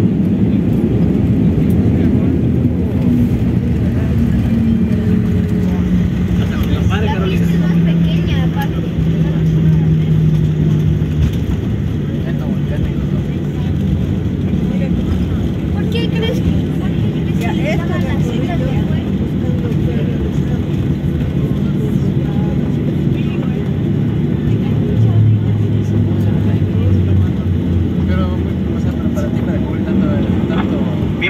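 Cabin noise of a Boeing 737 rolling out on the runway just after landing: the jet engines' hum winds down and falls in pitch over the first ten seconds or so as the airliner slows, over a steady rumble of the rollout.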